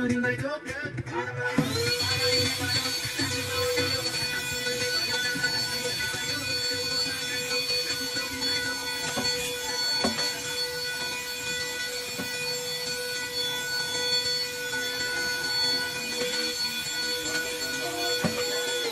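Handheld vacuum cleaner switched on about a second and a half in, its motor rising quickly to a steady whine and running on unchanged.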